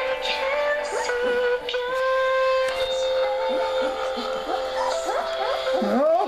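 Young puppies, about two weeks old, whining: one long steady cry held through most of the stretch, with short rising squeaks from the others over it, as they look for their mother.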